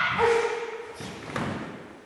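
Thuds on a wooden gym floor as a karateka is thrown down, with a short held kiai shout just after the start; the large hall echoes.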